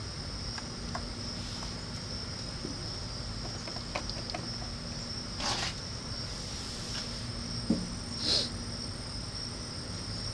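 Steady high-pitched chorus of crickets, with a few faint clicks and two short hisses, about five and eight seconds in.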